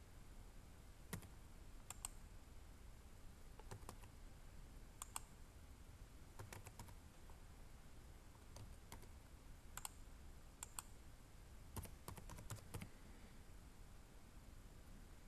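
Faint computer-keyboard keystrokes, sparse and irregular, a single key or a short cluster at a time, as numbers are typed in.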